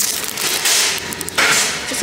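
Crackly rustling of a clear plastic sleeve around a small potted cactus as it is picked up and handled close to the microphone, in two spells, the second starting abruptly past the middle.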